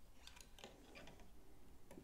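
Faint, irregular small clicks and ticks as hands handle a calibration weight hanging from a bicycle crank, in an otherwise near-silent room.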